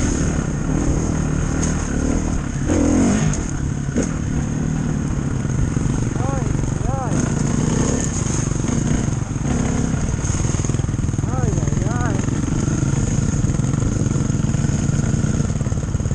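Dirt bike engine running while riding a trail, rising and falling in pitch several times as the throttle opens and closes.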